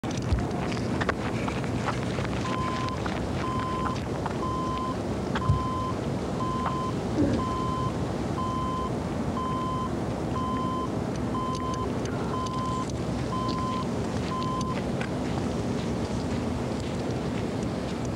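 Wind rushing steadily over a camcorder microphone outdoors, with a few brief knocks. Over the middle of the stretch a short electronic beep sounds about once a second, about thirteen times, then stops.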